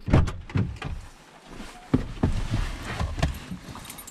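A few sharp knocks and thumps with rustling in between: someone moving about and handling things inside a car.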